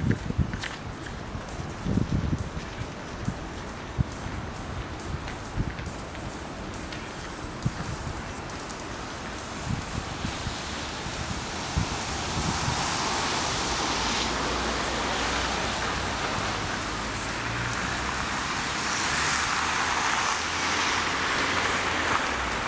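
Outdoor street traffic noise: scattered low thumps at first, then about halfway through a broad rushing sound swells up and holds, as vehicles pass close by.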